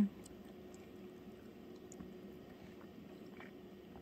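Quiet chewing of a soft, juicy mandarin segment: a few faint wet clicks over a low steady hum.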